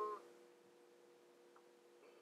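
Near silence: room tone with a faint steady hum of two low tones.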